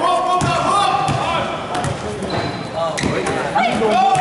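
A basketball bouncing on an indoor court, several sharp bounces spread through the moment, under the shouting voices of players and spectators.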